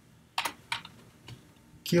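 A few separate keystrokes on a computer keyboard, spaced out while code is typed.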